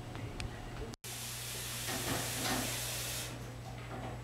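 A steady hiss starts abruptly about a second in and cuts off suddenly near the end, over a low steady hum.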